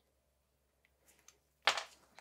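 Mostly quiet, with a couple of faint clicks as small metal shock parts and a fill tool are handled, and a short hiss near the end.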